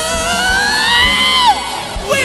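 Live pop-rock song: a male singer holds one long, slowly rising note over a loud backing track, and the note falls away about a second and a half in.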